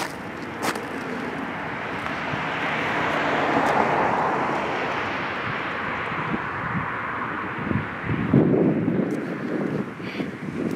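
A car passing on the street, its noise swelling over a few seconds and then fading away. Near the end there are gusts of wind on the microphone.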